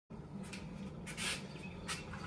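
Workshop room sound with a steady low hum, and a few short rustling, scraping handling noises about a second in and near the end as the wooden board is moved on the bench.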